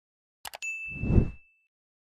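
Subscribe-button animation sound effects: two quick clicks, then a single bright bell ding held for about a second over a low swoosh that swells and fades.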